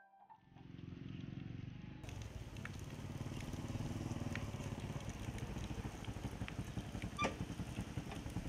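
A small step-through motorcycle engine running as the bike rides over a rough dirt track, getting slowly louder as it comes closer, with a few sharp knocks.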